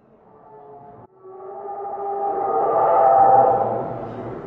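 Mechanical dinosaur larynx of balloon membranes and brass pipes, blown into to sound a droning, pitched call with overtones. It breaks off briefly about a second in, then a lower note swells louder and eases off near the end.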